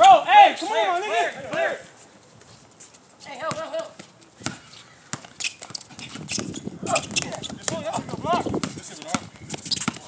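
A basketball being dribbled on an outdoor hard court: a run of short bounces through the second half. A shout comes in the first couple of seconds.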